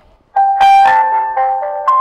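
Handheld megaphone playing its built-in electronic music function: a loud melody of steady electronic notes stepping from pitch to pitch, starting about a third of a second in.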